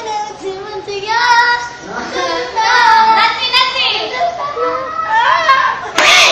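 High-pitched girlish voices singing a K-pop song, with faint backing music.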